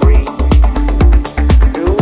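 Electronic dance music from a live DJ mix: a steady four-on-the-floor kick drum about two beats a second, with hi-hats between the kicks and a deep sustained bass line.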